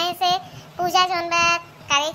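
A high-pitched, childlike cartoon character's voice speaking in drawn-out, sing-song phrases, with some syllables held on one pitch.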